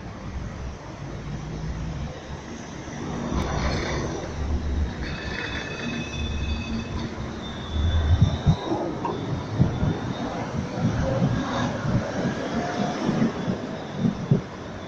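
Articulated low-floor tram passing close by on street track: a low rumble that builds, with the wheels squealing in thin high tones in the middle, then a run of irregular knocks from the wheels on the track for the second half.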